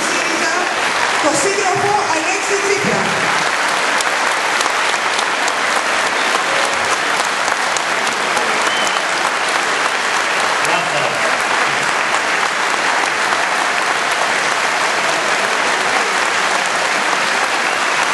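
Audience applauding: dense, steady clapping filling a large hall, with a few voices heard over it in the first three seconds.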